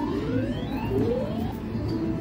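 Video poker machine playing its win count-up sound: a run of rising electronic tones, about three in a row, as the winnings credit up, over a steady casino background hum.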